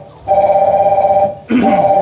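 A loud, steady electronic tone of two close pitches. It drops out briefly at the start and again about a second and a half in.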